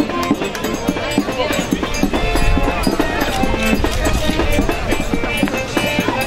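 Live folk band music with a steady, quick drumbeat and a strummed guitar.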